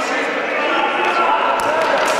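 Indistinct players' voices and shouts echoing in a sports hall during an indoor futsal game, with a few sharp knocks of the ball being kicked and bouncing on the court.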